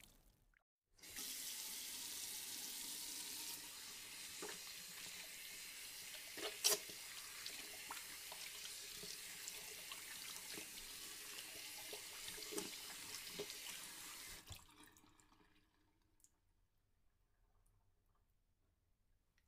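A stream of water pouring into standing water, a steady splashing hiss with a few louder plops. It starts about a second in and dies away about three-quarters of the way through.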